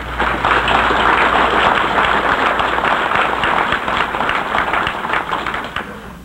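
Audience applauding: a dense clatter of many hands clapping that starts suddenly and fades out near the end.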